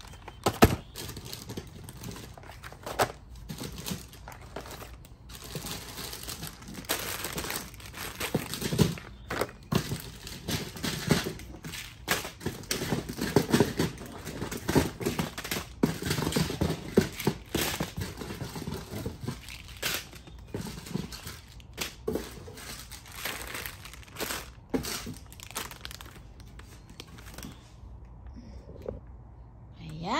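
Plastic candy packaging crinkling and rustling as bags of Easter candy are handled and piled up, with scattered sharp knocks of packages and boxes being set down.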